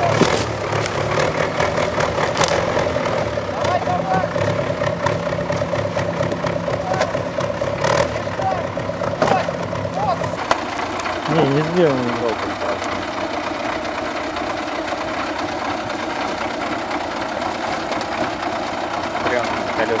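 GAZ-66 truck's engine running as the truck crawls over a pile of logs, with a few sharp knocks in the first half. About halfway through, the engine drops to a lower, quieter run, and a person's voice calls out briefly just after.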